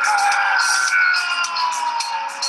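Soundtrack music with a regular percussive beat and a long tone gliding slowly downward in pitch, played back over a video call.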